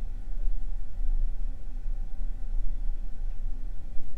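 A steady low hum with no other distinct sounds: room tone.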